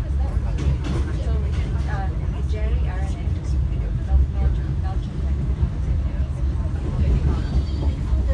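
Steady low rumble of a KTMB Shuttle Tebrau train running, heard from inside the passenger coach, with passengers talking under it.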